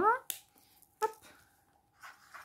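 A single sharp click of a felt-tip marker's cap about a third of a second in, as the marker is switched from its fine tip to its brush tip, between two short spoken words.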